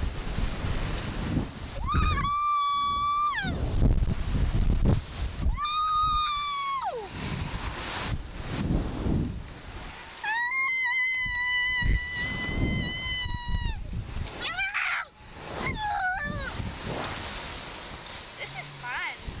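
A girl screaming on a Slingshot reverse-bungee ride: three long, high screams, the last and highest held about four seconds, then a few shorter cries near the end. Wind rushes on the microphone throughout.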